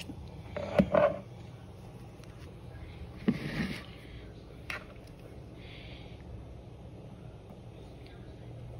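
Silicone spatula working cooked beans and hot broth in a plastic bowl: a few brief wet scrapes and a sharp tap near the middle, over a steady low hum.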